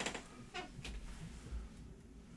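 Faint handling sounds: a few soft clicks and knocks, with a short squeak about half a second in, as a person leans over and reaches toward a guitar speaker cabinet.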